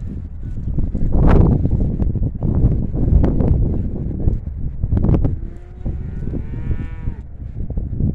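Wind buffeting the microphone in uneven gusts, and near the end one drawn-out pitched call lasting about a second and a half.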